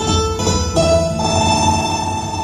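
Instrumental backing music for a song cover, with held melodic notes that change a few times and no singing yet.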